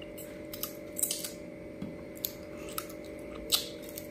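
Close-miked eating sounds: wet mouth smacks and clicks as fish curry and rice, eaten by hand, are bitten and chewed. There are about seven short sharp ones, the loudest near the end.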